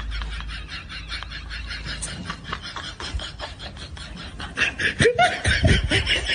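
A man laughing into a spinning electric fan, the blades chopping his voice into a rapid, even stutter. It grows louder near the end, with rising and falling pitch.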